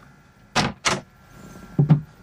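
Two sharp clacks about a third of a second apart, then a dull double thump near the end: a boat's cabin door being moved and shut.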